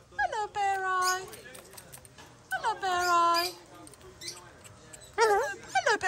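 A cockatoo calling: two long drawn-out calls, each dropping sharply in pitch at the start and then holding level, followed by two shorter calls near the end.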